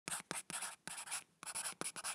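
Pen-on-paper scribbling: several short, quick scratching strokes with brief gaps between them, as a line drawing is sketched.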